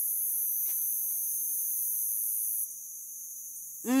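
Night insects (crickets) chirring steadily at a high pitch, dropping to fainter about two-thirds of the way through. There is one faint click about a second in.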